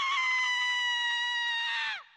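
A single long, high-pitched scream held on one note, sagging slowly in pitch and falling away sharply at the end.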